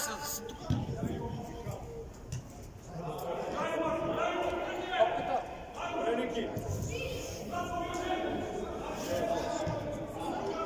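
Shouting voices of players and coaches in a football match, echoing in a large indoor sports hall, heard from about three seconds in.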